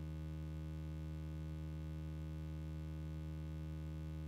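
A steady, unchanging low electronic hum with a buzzy stack of overtones, held at one pitch and one level; it replaces the outdoor sound abruptly, like a tone or glitch laid in during editing.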